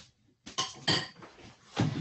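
A few short clinks and knocks in quick succession, like small hard objects being handled, heard through a video call's audio.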